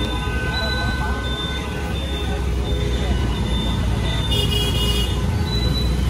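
Steady road and engine noise from riding pillion on a motorbike taxi through city traffic, with wind rumbling on the microphone and short horn toots from the traffic around.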